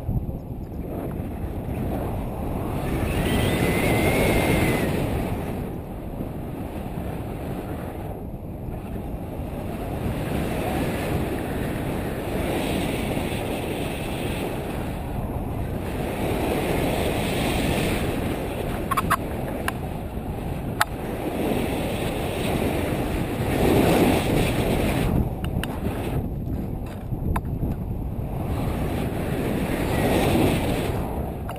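Wind rushing over an action camera's microphone in paraglider flight: a steady low rumble that swells and eases every few seconds.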